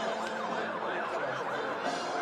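A siren sounding in a quick rising-and-falling yelp, over and over.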